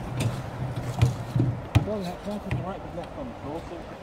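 Quiet talking in the background, with one sharp click a little under two seconds in.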